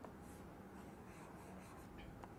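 Faint scratching strokes of a pen drawing arrows on a sheet of paper, soft and intermittent.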